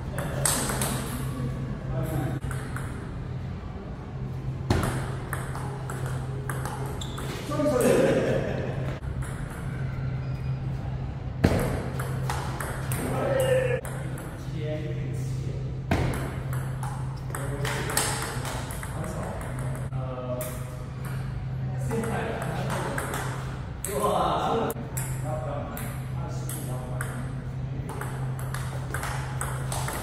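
Table tennis rally: the ball struck back and forth by rubber-faced paddles and bouncing on the table, a rapid run of sharp clicks. A steady low hum sits underneath.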